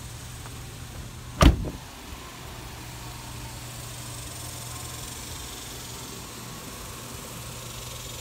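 A truck door slammed shut once, loud and sharp, about one and a half seconds in, over a steady low hum.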